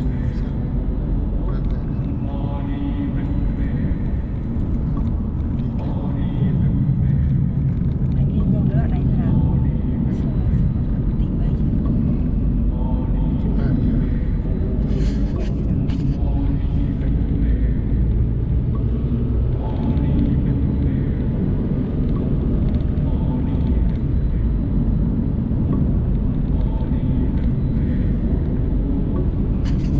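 Steady low road-and-engine rumble inside the cabin of a Mercedes-Benz car cruising on a highway.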